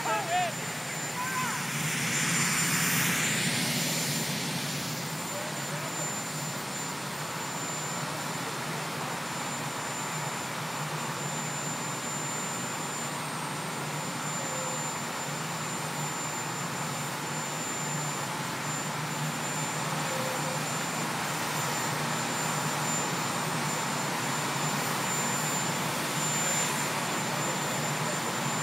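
Marine One, a VH-3D Sea King helicopter, running its turbine engines steadily on the ground: a continuous rushing hum with a thin high whine, a little louder for a couple of seconds near the start.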